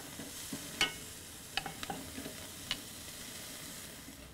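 Sliced onion and spiralized apple sizzling in oil in a cast iron skillet, stirred with metal tongs that click sharply against the pan a few times.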